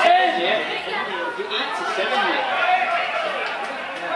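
Several voices talking and calling out over one another, indistinct chatter with no single clear speaker.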